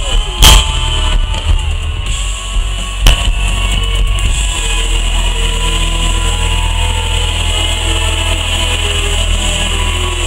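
Live band music recorded from the crowd, loud with heavy bass and gliding melodic lines. Two sharp, loud bangs cut through it, about half a second in and about three seconds in.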